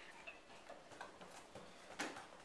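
Near silence with a few faint, light clicks at irregular intervals.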